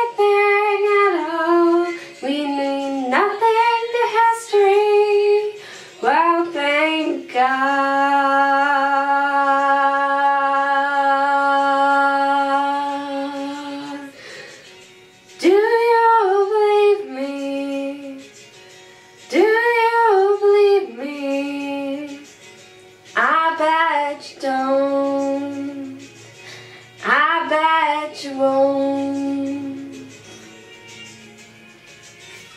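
A woman singing unaccompanied in wordless vocal phrases, with several held notes, the longest lasting about six seconds, in a small tiled bathroom.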